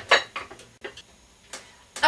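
A cluster of light metallic clinks and knocks, then two more single clicks, as a plate-loaded dumbbell is lowered and set down.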